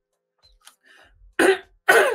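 A woman coughs once, short and sudden, about one and a half seconds in, just after taking a drink; faint small sounds come before it, and she starts speaking right at the end.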